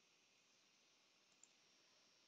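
Near silence: only a faint, steady hiss of the recording's noise floor.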